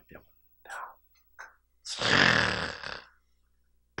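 A man's breathy vocal sounds close on a headset microphone: a few short soft breaths, then one long breathy exhale lasting about a second.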